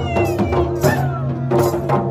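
Mandar barrel drums beaten by hand in a quick folk rhythm of about three strokes a second, with a voice singing sliding, falling notes over them through a microphone.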